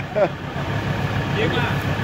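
Engine of a red off-road buggy running at a steady idle, with people talking over it.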